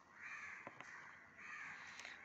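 Two faint bird calls in near quiet, one early and one near the end, with a faint click between them.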